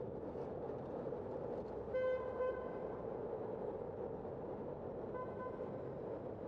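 A vehicle horn tooting twice in quick succession about two seconds in, then once more, fainter, near the end, over the steady rush of wind and road noise from a moving bicycle.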